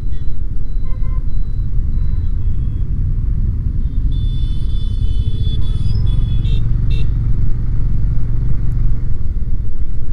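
Triumph Speed 400's single-cylinder engine running under way, under a heavy low rumble of wind and road noise. About four seconds in, a high steady tone sounds for over a second, followed by two short blips.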